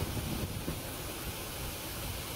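Floodwater running across a road surface and pouring over a concrete roadside barrier in a long cascade, a steady rushing noise.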